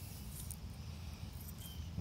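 Quiet outdoor field ambience in a pause between words: a steady low rumble of wind on the microphone with a few faint, short high chirps.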